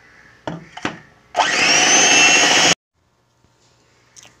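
Electric hand mixer beating cake batter in a bowl. It is switched on about a second and a half in with a whine that rises as the motor spins up, runs for about a second and a half, and then cuts off suddenly.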